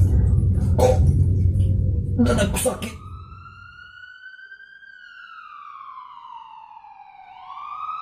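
A person's loud, rough groaning with a few harsh bursts, cut off about three seconds in. An ambulance siren sound effect then wails, falling slowly in pitch and rising again near the end.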